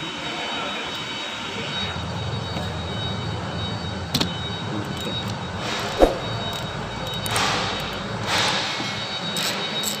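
A socket ratchet loosening a wiper-arm nut over a steady mechanical hum. There are a few clicks about four seconds in, a sharp knock about six seconds in, and two short spells of ratchet noise near the end.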